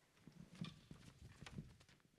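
Faint footsteps of shoes on a hard stage floor, a few irregular steps.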